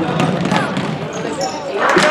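A basketball bouncing on a hardwood gym floor amid shouting voices, with the crowd's noise swelling suddenly near the end as a shot goes up under the basket.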